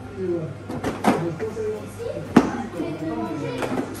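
A few plastic knocks and clunks as a small child climbs into a ride-on electric toy car, the sharpest knock a little past halfway, under quiet voices.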